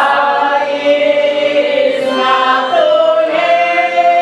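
A group of women singing a traditional Polish folk wedding song in unison, with long held notes that glide from one pitch to the next.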